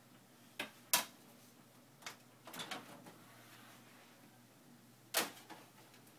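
A few scattered sharp clicks and light knocks: a toddler handling a DVD disc, with one louder click a little after five seconds as he reaches the DVD player.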